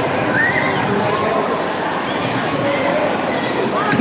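Crowd hubbub: many voices talking and calling out at once, steady throughout, with a brief sharp sound right at the end.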